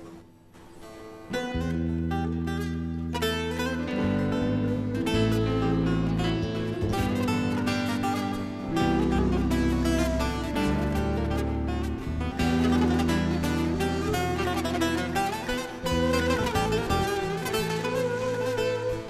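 Instrumental introduction of a Black Sea Turkish folk tune: an end-blown cane flute plays the melody over a bağlama saz and a strummed acoustic guitar, coming in about a second and a half in.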